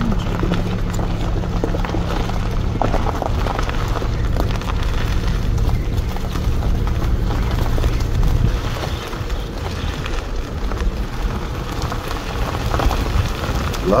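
A car's engine and road noise heard from inside the cabin while driving: a steady low drone that eases off and becomes more uneven about eight or nine seconds in, as the car slows or lightens its throttle.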